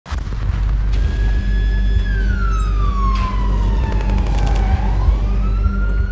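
A siren wailing: it holds a high pitch, falls slowly for a couple of seconds, then rises again, over a steady low rumble. A few sharp cracks sound about halfway through.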